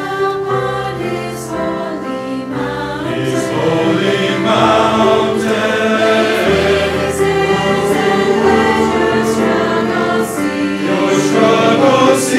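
A mixed choir of male and female voices singing a hymn in parts, the words clearly sung, swelling louder about four seconds in.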